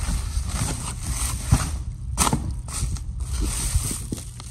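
Bubble wrap and foam packing being handled and pulled open inside a cardboard box: irregular crinkling and sharp crackles, a few louder snaps about midway, over a low steady rumble.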